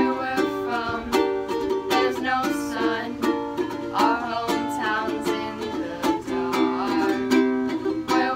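Ukulele strummed in a steady rhythm, with voices singing over it.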